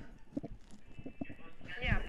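Stifled laughter held back at a microphone: a quiet run of short snorts, clicks and breathy snuffles. Near the end a man briefly says "Ja".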